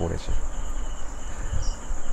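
A steady high-pitched background whine with a fainter tone beneath it, over a low hum, in a pause between spoken words.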